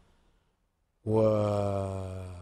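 A man's voice holding one long, level-pitched "waaa" (Arabic "wa", "and") about a second in, a drawn-out hesitation between sentences that slowly fades.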